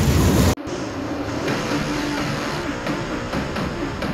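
Dirt-track race car engines running loud, cut off suddenly about half a second in. After the cut comes a quieter mix of wavering engine revs and music.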